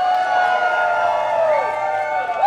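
A crowd of protesters cheering, many voices holding long shouts at once.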